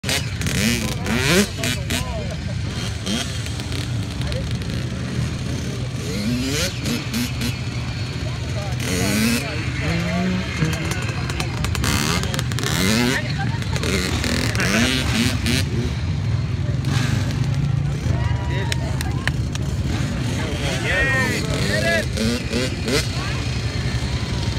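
Small youth dirt bike engine running steadily as it is ridden around, with people talking in the background. A few sharp knocks from the phone being handled come in the first couple of seconds.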